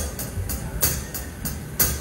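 Live band playing softly under the pause: light cymbal taps about three a second over a low bass, leading into the next song.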